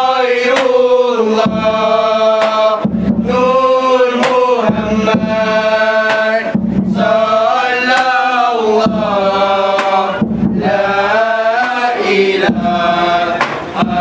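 A group of men's voices singing a selawat, an Islamic devotional chant, in unison, in long drawn-out phrases that break for breath every second or two.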